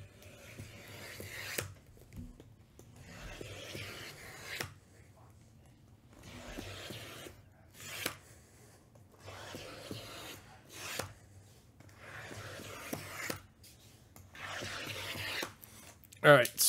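Shrink-wrapped cardboard boxes being slid and stacked by hand: repeated faint scraping and rubbing of plastic wrap against the other boxes, with a sharp tap each time a box is set down on the pile, several times over.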